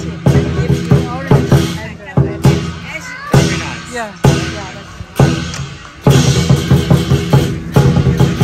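Chinese lion dance drum beaten in rapid strokes with clashing cymbals, the traditional accompaniment to the lion's dance, broken by several short pauses.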